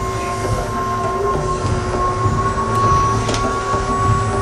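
Experimental electronic drone: two steady held tones, one high and one lower, over a dense low rumble, with a few faint clicks.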